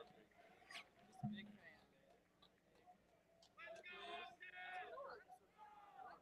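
Faint track-side quiet: a man's soft "oh" about a second in, then distant voices shouting for about a second and a half, in two bursts, past the middle.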